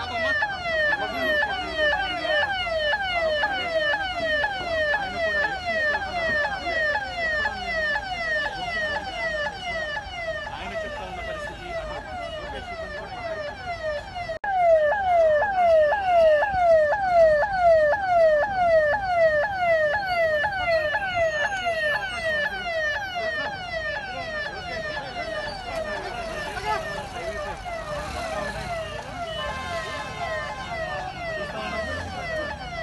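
Electronic siren of a police vehicle, wailing in quick repeated falling sweeps, about two to three a second; it grows louder about halfway through.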